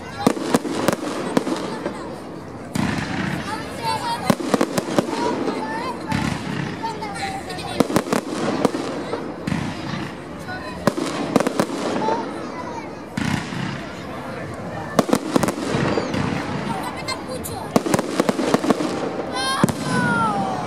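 Aerial firework shells going off throughout, with many sharp bangs, some coming in quick runs.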